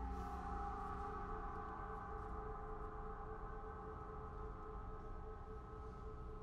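Large Paiste gong, struck softly with a mallet right at the start. Many overlapping tones then ring on and slowly fade.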